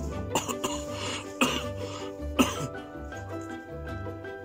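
A person coughing and clearing their throat several times over background music, with the two loudest coughs about a second and a half and two and a half seconds in.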